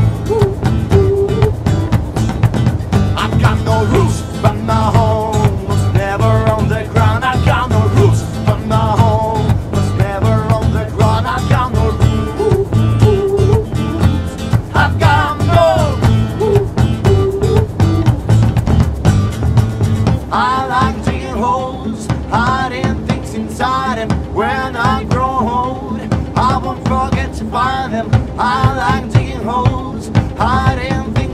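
A band playing a pop-rock cover song, with a male lead voice singing over bass guitar, drums and keyboard. About twenty seconds in the bass and drums drop out and the voice carries on over lighter backing.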